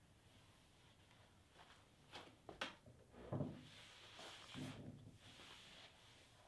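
Faint hand brushing across a bare walnut tabletop, with a few light knocks a couple of seconds in and a soft rubbing hiss through the second half.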